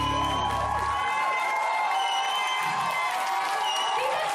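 A live band and a female singer close out a song. The band's low end stops about a second in while she holds a long high note, and the audience cheers.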